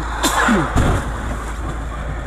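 Vehicle collision on the road: a sudden crash noise about a quarter second in, then a sharp knock just under a second in, over a steady engine hum. Voices exclaim around it.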